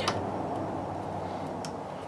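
Low steady background noise with two faint clicks, one at the start and one late on, from hands handling the fan controller's cords on a wooden beam.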